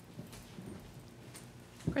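A few soft footsteps of shoes on a hard floor, faint over low room hum.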